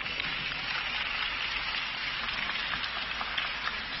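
Arena audience applauding, a dense, even patter of many hands clapping.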